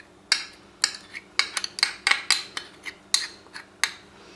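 Metal spoon clinking and scraping against a small ceramic ramekin while scooping out curry paste, a dozen or so irregular sharp taps.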